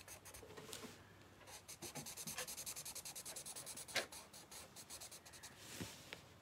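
Black Sharpie permanent marker scratching on sketchbook paper in quick, repeated strokes as a section is filled in solid black; faint. Two light knocks stand out, about four seconds in and just before the end.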